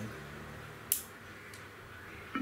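A single sharp click about a second in, from the knob switch of a small portable speaker being switched on, over faint steady room hum.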